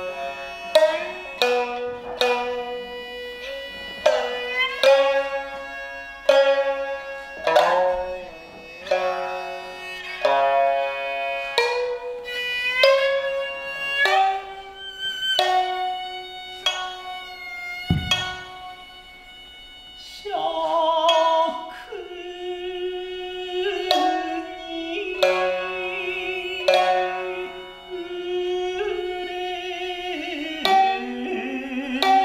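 Shamisen plucked in single notes and short phrases, each note ringing and fading. From about twenty seconds in, a voice sings a long, wavering melody over the shamisen. Just before the singing, a single dull low thump sounds.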